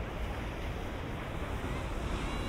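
Sea surf washing on the beach, heard as a steady rushing noise, with wind rumbling on the microphone.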